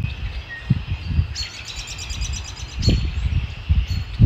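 Birds calling and singing together, with a fast trill of rapidly repeated high notes starting about one and a half seconds in and lasting over a second. Irregular low rumbles sit underneath.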